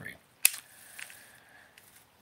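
A sharp click from a Daiwa STEEZ Limited SV TW baitcasting reel, then a faint short whir of its spool that dies away within about a second and a half. The spool is not spinning very free: its tension is set tighter than the owner wants.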